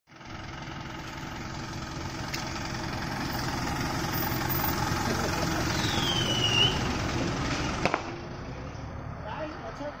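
Minibus engine and tyres as the bus drives off and passes close by, the noise building to a peak and then dropping away. There is a short falling squeal a little after six seconds and a sharp click near eight seconds.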